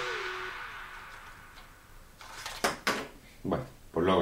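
A few light plastic clicks and knocks, clustered about two to three and a half seconds in, as a toy quadcopter's small plastic camera module and body are handled.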